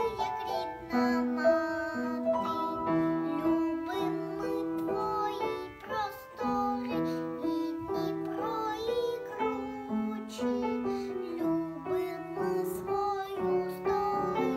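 A young girl singing a song over instrumental accompaniment.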